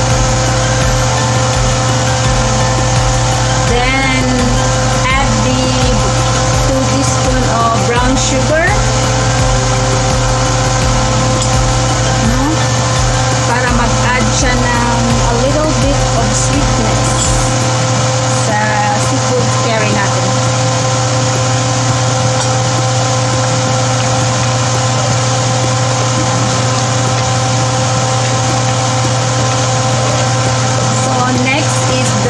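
A loud, steady machine hum with a low rumble that drops away about halfway through. Faint voices are heard in the background a few times.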